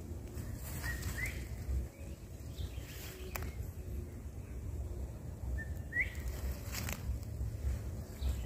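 Low rumble of wind and handling noise on the microphone. Two short rising bird chirps sound, about a second in and again near six seconds, with a few sharp clicks between.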